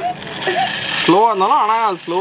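A steady whirring hiss for about the first second, then a person's drawn-out, wavering voiced call lasting most of a second.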